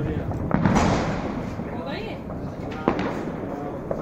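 Diwali firecrackers going off: a loud bang about half a second in, then two sharper, shorter cracks near the three-second mark and just before the end, with voices in the background.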